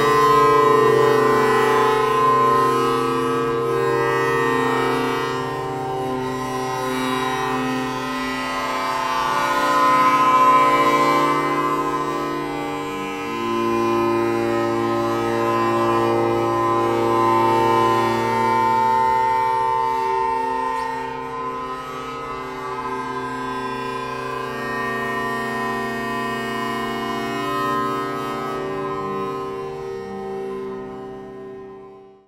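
Long String Instrument: many long metal wires bowed lengthwise to set them ringing in their longitudinal mode, producing sustained, overtone-rich drone chords whose pitches change slowly, joined by a cello. The sound fades out near the end.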